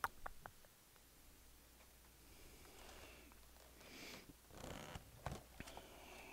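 Near silence: room tone with a few faint clicks just after the start and soft rustling swells in the second half.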